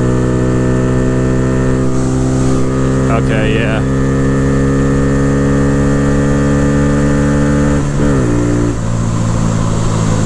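The single-cylinder engine of a 2022 Honda Grom, fitted with an aftermarket cam, intake and ECU flash, pulls hard at high revs, its pitch climbing slowly as the bike accelerates. About eight seconds in, the throttle closes and the engine note drops.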